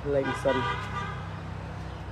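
A man speaking, with a brief high-pitched tone of several notes under his first words, and a steady low hum throughout.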